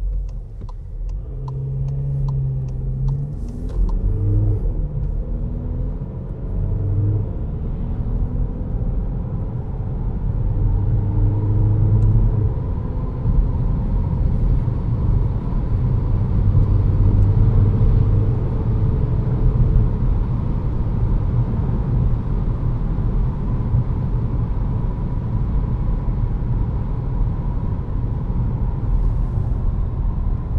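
Škoda Karoq's 2.0 TDI four-cylinder diesel engine and road noise heard from inside the cabin as the car accelerates. The engine note rises and drops back at each gear change during the first two-thirds, then settles into a steady drone with tyre rumble at cruising speed.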